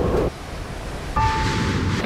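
Storm wind and rain, a steady rushing noise. About a second in, a held high tone joins it.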